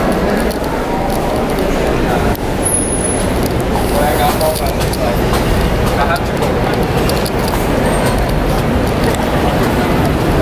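Busy city street ambience: steady traffic noise with people's voices in the background.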